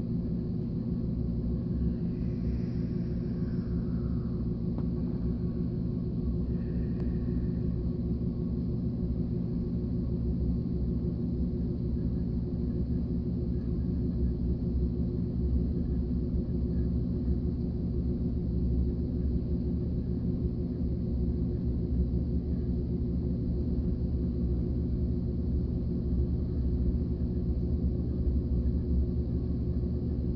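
A steady low mechanical hum, even in pitch and level throughout.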